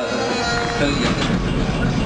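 A song playing over a loudspeaker, giving way about a second in to a steady low rumble from the Sheboygan Light, Power & Railway interurban trolley car.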